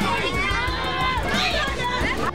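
Many children's voices shouting and calling over one another while they jump on an inflatable bouncy castle, with soft, dull thumps of feet landing on the inflated floor.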